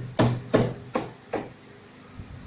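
Four sharp knocks, a little under half a second apart, each dying away quickly, as the plastic wheel-arch liner is struck by hand to work it loose.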